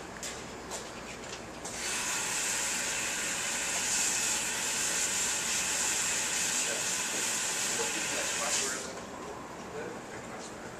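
Water running from a kitchen tap, a steady hiss that starts abruptly about two seconds in and stops abruptly about seven seconds later.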